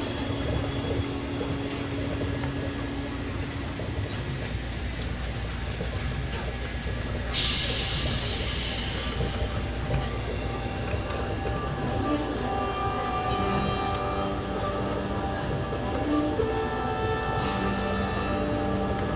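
Monorail car running with a steady low rumble heard from inside the cabin. A burst of hiss comes about seven seconds in and lasts a couple of seconds. From about twelve seconds, held musical tones sound over the running noise.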